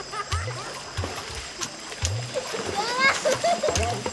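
Children splashing and calling out while swimming in a river, over background music with a steady low beat about every two-thirds of a second. A burst of higher calls comes near the end.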